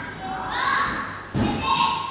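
A single thud about one and a half seconds in: a young gymnast's feet landing on the balance beam. Children's voices are faint in the background.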